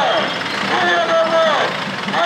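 A voice calling out in long drawn-out phrases, each held on one pitch and then falling away, over a steady background of street and vehicle noise.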